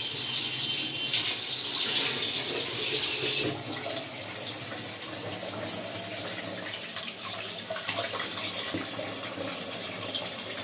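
Tap water running and splashing into a steel kitchen sink as pieces of fish are rinsed by hand under it. The splashing becomes much quieter about three and a half seconds in.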